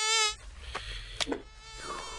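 Mosquito buzzing: a high, wavering whine, loud for the first third of a second, then carrying on faintly, with a few light clicks.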